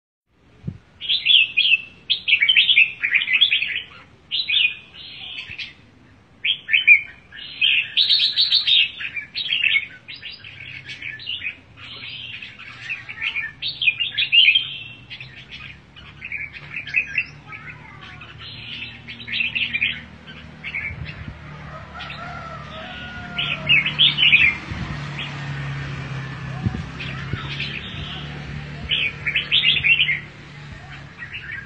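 Two caged red-whiskered bulbuls singing back and forth, in short, rapid, chattering whistled phrases, densest in the first third and sparser later. A low steady hum sits underneath from about a third of the way in.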